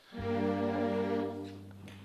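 Electronic keyboard sounding one sustained, orchestral-style chord that holds steady and then fades away after about a second and a half.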